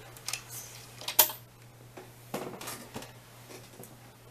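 A few small, sharp clicks and taps from handling nail-polish bottles and nail-art tools, with the loudest click about a second in.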